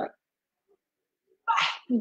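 A person's voice: the end of a spoken phrase, then over a second of dead silence, then a short breathy vocal burst about a second and a half in, just before speech starts again.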